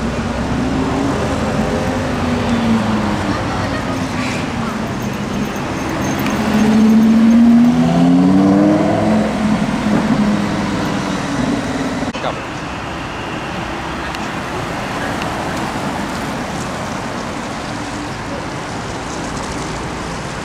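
Lamborghini Huracán's V10 engine pulling away, its note rising in pitch twice and loudest between about six and nine seconds. Its sound drops away after about twelve seconds, leaving steady street traffic noise.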